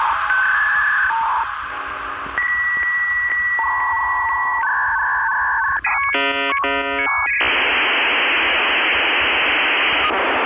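Electronic soundtrack: a few held synthesizer tones stepping from one pitch to another, a short stuttering chord burst about six seconds in, then a steady static-like hiss of noise.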